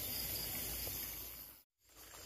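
Faint, steady chorus of night insects (crickets) in waterside grass. It cuts out completely for a split second near the end.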